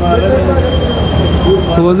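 Background music with a heavy low bass under voices, ending near the end. A steady high-pitched tone sounds through the middle.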